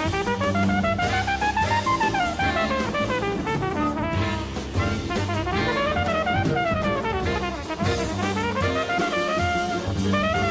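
Flugelhorn soloing in a live jazz quintet, running fast phrases that climb and fall, over walking double bass and drum kit.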